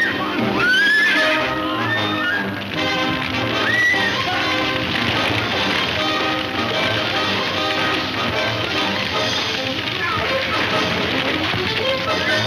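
Frightened horses whinnying several times in the first few seconds, with a film score playing underneath throughout.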